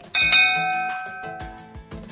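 A bell chime sound effect, of the kind that goes with an animated subscribe button and bell icon, rings once just after the start and fades over about a second and a half. It sounds over background music with a steady beat.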